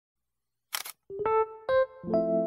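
A camera shutter click about two-thirds of a second in, followed by background music on electric piano starting with a few single notes.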